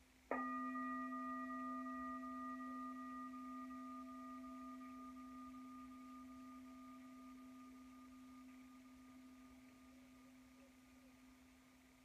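A meditation bell struck once, about a third of a second in, ringing with a steady low tone and a few higher overtones and fading slowly over about ten seconds. It marks the end of the silent meditation.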